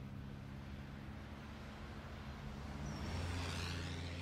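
A small hatchback's engine running steadily as the car approaches, then passing close near the end with a louder engine note and rushing tyre noise.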